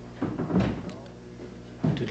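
A door shutting with a short thud about half a second in, over a faint low hum of room tone.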